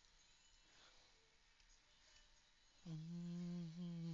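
Near silence, then about three seconds in a person starts humming one steady low note and holds it.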